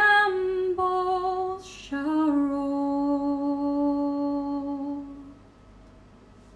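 A woman's voice singing a wordless melody: two short notes, a quick breath, then one long lower note held for about three seconds that fades away.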